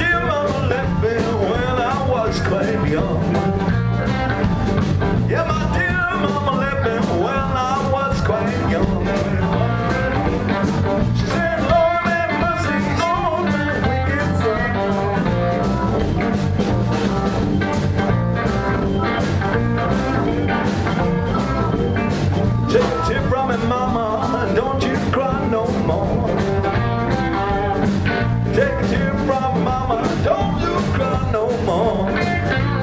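A live blues band playing electric guitars, bass guitar, keyboards and drums together, over a steady beat.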